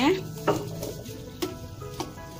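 A spoon knocks lightly against a metal wok of soup twice, about half a second and a second and a half in, as the soup is stirred.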